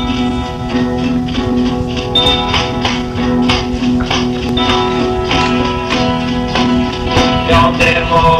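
Instrumental opening of a 1960s garage rock song: sustained chords held over a steady drum beat.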